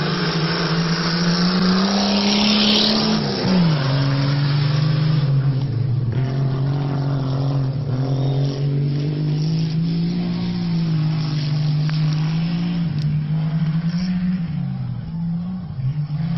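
Touring race cars' engines pulling hard from a standing start. The pitch climbs, drops sharply at a gear change about three and a half seconds in, then holds steady at speed.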